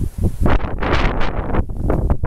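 Wind buffeting the microphone in loud, irregular gusts, with rustling.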